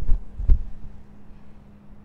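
Two low thumps about half a second apart near the start, over a steady low electrical hum.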